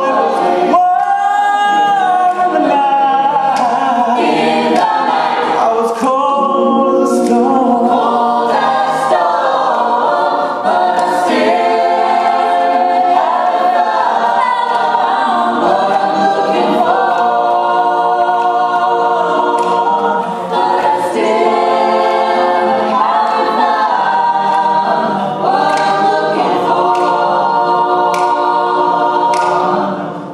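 Mixed male and female a cappella choir singing a pop-rock song live in several vocal parts, voices only with no instruments.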